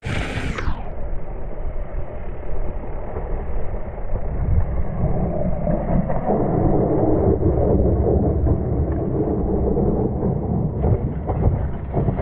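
Mountain bike rolling fast down a dirt singletrack, heard through the bike-mounted camera as a continuous muffled noise of tyres and rattling bike parts. It gets louder about four seconds in as the riding gets rougher.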